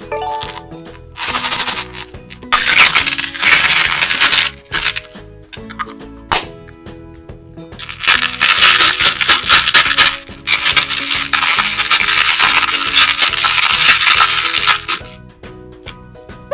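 Hard-shelled candy-coated sweets rattling and clattering against each other and the plastic toy bathtub as a doll is pushed and stirred through them, in several long loud bursts, the longest in the second half.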